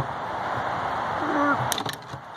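A hand tool working at the plastic handle of a Gallagher geared electric-fence reel, with a few sharp clicks near the end over a steady hiss.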